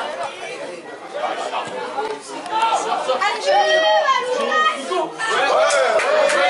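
Several voices calling out and chattering around a football pitch, with one loud, high-pitched call about three and a half seconds in.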